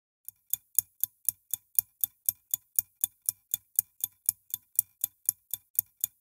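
Steady clock-style ticking, about four sharp, evenly spaced ticks a second.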